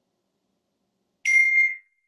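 Silence, then a single bright ding about a second and a quarter in: one clear tone held for about half a second that fades out in a faint ringing tail.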